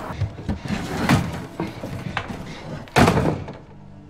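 Scattered knocks and thuds, then a loud slam about three seconds in, from the drama's soundtrack.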